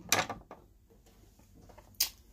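Guitar-handling noise in a small room: a short rustle just after the start, then low room tone, and a sharp knock near the end as the acoustic guitar is lifted and moved.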